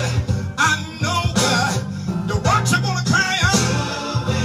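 Live gospel band music through outdoor PA speakers: a steady bass line and guitar, with a voice wavering over the top.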